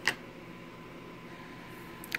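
A steady, quiet hiss of an electric fan running in the room. A single click comes right at the start.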